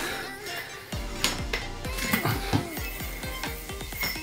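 Background music with a few light clicks and clinks from a yo-yo being played through tricks, the yo-yo knocking and sliding on its string.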